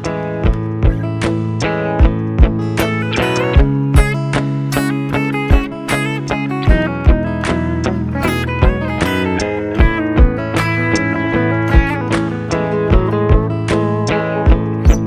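A layered guitar loop playing over a steady drum beat, with a Fender Acoustasonic Stratocaster picked live on top as a new layer.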